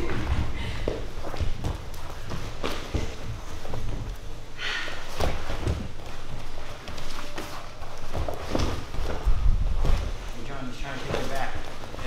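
Grapplers' bodies and bare feet thudding and shuffling on foam mats during live sparring, with irregular soft thumps throughout and a short rushing sound about five seconds in.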